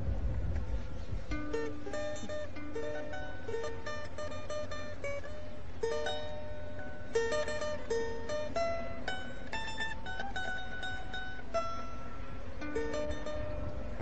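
A small mechanical music box playing a slow tune of single plucked, ringing notes, about two a second, starting about a second in.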